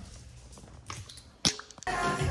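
Quiet room tone with a single sharp knock about three-quarters of the way through, then music with a beat cuts in abruptly just before the end.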